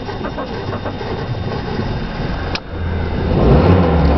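Car interior noise in rain: the engine is running and rain is falling on the car. A sharp click comes a little past halfway, then a loud low bass hum swells up toward the end.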